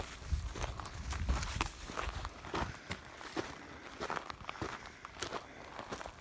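Footsteps crunching through dry grass and brush, with irregular snaps and crackles of twigs and stems underfoot.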